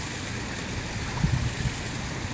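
Pool water splashing and sloshing as a small child kicks on his back learning backstroke, with a few low thumps just past the middle.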